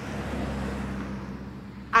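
A car driving past on a street, its road noise swelling and then slowly fading.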